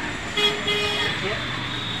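A vehicle horn toots once, about half a second long, over background street traffic.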